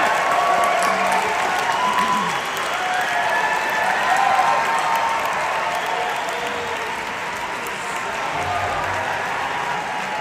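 Large concert-hall audience applauding steadily as a performer is welcomed onto the stage, with a few voices rising over the clapping.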